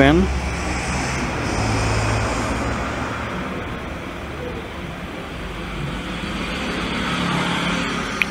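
Low steady background rumble with a faint hum, easing off in the middle and swelling again near the end.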